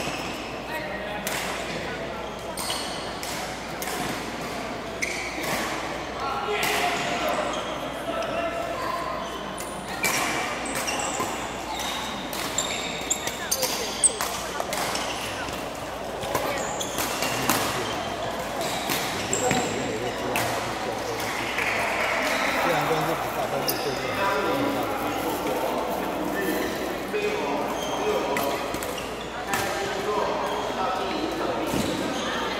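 Badminton rally: sharp racket strikes on the shuttlecock at irregular intervals, echoing in a large sports hall over a steady murmur of voices.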